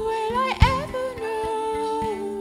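Music: a woman's voice holding long wordless sung notes, layered over other sustained looped vocal lines, with a low thump about half a second in.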